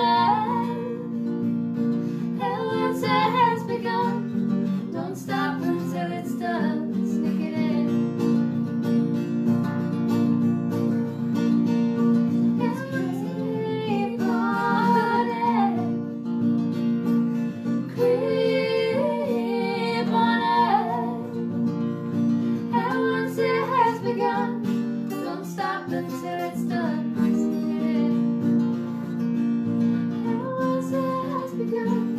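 Acoustic guitar strummed steadily, with women singing a song over it in phrases separated by short gaps.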